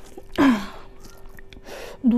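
A woman's short breathy gasp-like exhale, falling in pitch, about half a second in. After it come faint small clicks of fingers working food on the plate.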